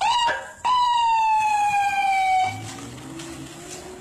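A siren sounding briefly and loudly: a short rising whoop, then a longer tone that falls slowly in pitch for about two seconds before cutting to a quieter, lower drone.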